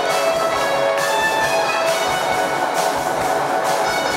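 Electronic keyboard playing held, layered chords with an orchestral-style sound.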